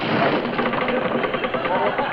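Studio audience laughing: a loud, sustained wave of laughter from many people at once.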